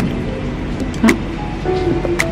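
Background music with held notes and a light tick about once a second.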